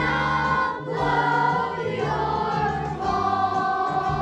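Children's choir singing in unison over a musical accompaniment, holding sustained notes.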